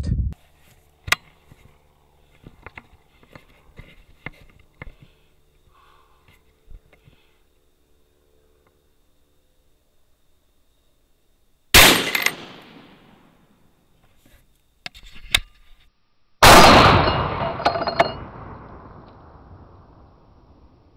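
Two loud rifle shots from a .300 WSM, about four and a half seconds apart, each a sharp crack followed by a ringing tail, the second tail the longer. Faint clicks of the rifle being handled come before the first shot and between the two.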